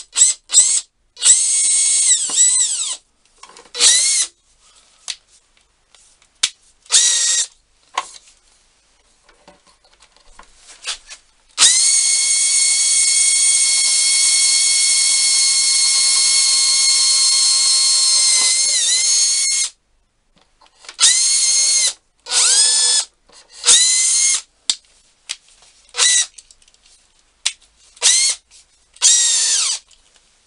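Hand-held electric drill boring holes through a wooden board for caster bolts: short bursts of the motor whining up to speed, one long steady run of about eight seconds in the middle with a brief dip in pitch near its end, then a string of short bursts.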